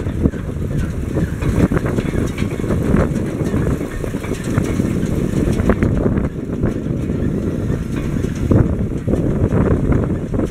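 Tractor engine running steadily to power the hitched round baler's hydraulics, with wind buffeting the microphone.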